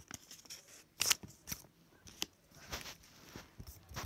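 Scissors snipping paper in a few separate short cuts, trimming a small folded piece, with some softer paper rustling.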